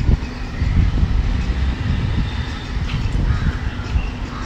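Uneven wind rumble on the microphone of a handheld camera, with a bird calling faintly about three and a half seconds in.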